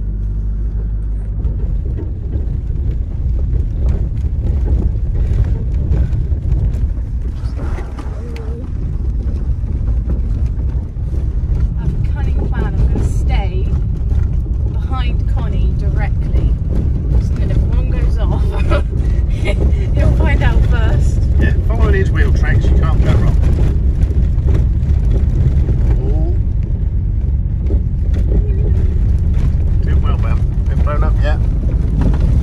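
Heavy, steady low rumble inside the cabin of an old VW Passat driven over a rough, rutted sandy desert track: tyres and suspension working over the bumpy surface with the engine running. Voices talk over it through the middle and later part.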